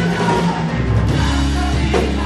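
Live worship band music with a drum kit prominent, playing loud and steady under long held low notes.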